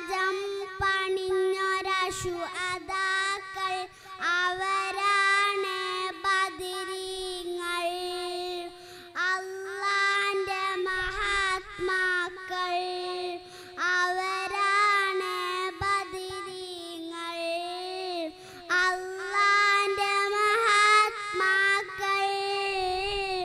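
A young girl singing solo into a microphone, a melodic song with long held, wavering notes.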